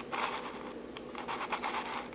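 Plastic pieces of a Royal Pyraminx, a six-layer twisty puzzle, scraping and clicking as its layers are turned by hand, in two short runs.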